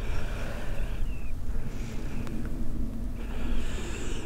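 Wind rumbling and buffeting on the camcorder's microphone, unsteady in level, with the heavy breathing of a hill walker out of breath from the climb.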